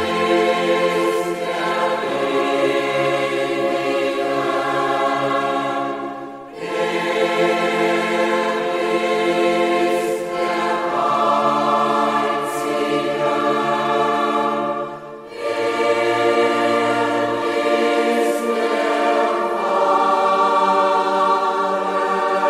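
Choir singing a slow sacred oratorio in long, sustained chords. The phrases are broken by two short pauses, about a third and two-thirds of the way through.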